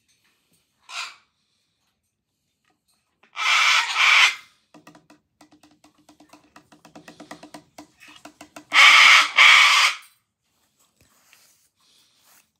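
A white cockatoo calling. A short squawk comes about a second in, then two loud harsh screeches, a stretch of rapid clicking chatter over a low hum, and two more loud screeches near the end.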